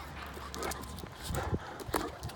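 A Great Dane's feet striking brick pavers in a few scattered footfalls as it bounces about.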